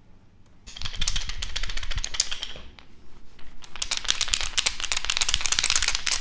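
Wooden massage roller worked firmly over the shoulder through a shirt: a dense run of fast wooden clicking and rustling that starts about a second in, eases briefly near the middle, then picks up again, louder.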